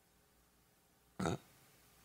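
Quiet room tone broken about a second in by one brief, abrupt vocal sound from a person, a short throaty noise rather than a word.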